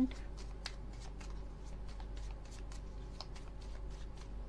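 A deck of playing cards shuffled by hand: a run of irregular soft clicks as packets of cards are slid and flicked against each other.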